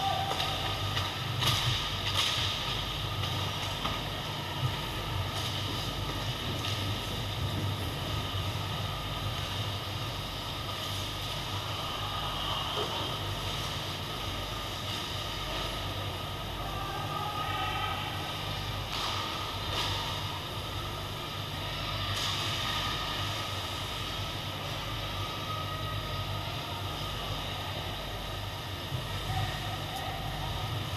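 Ice hockey game ambience in an indoor rink: a steady low hum and hiss with the scrape of skates and clatter of sticks, and a few sharp knocks in the first five seconds.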